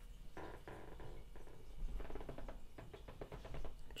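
Light scratching and rustling from fingers and thread as craft fur is spread over a lure head and wrapped down with tying thread in a vise: a run of small quick clicks and rustles.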